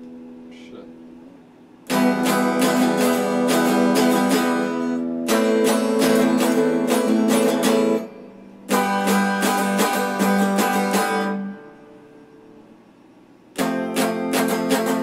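Stratocaster-style electric guitar played in passages of fast strumming a few seconds long, broken by short pauses where a chord rings and fades, with a new burst starting near the end.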